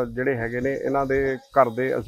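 Speech only: a man talking, with no other sound standing out.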